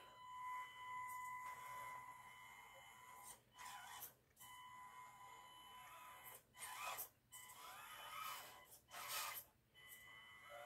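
Faint steady high whine and several short bursts of motor and gear noise from a Panda Hobby Tetra K1 mini RC crawler as it crawls under throttle.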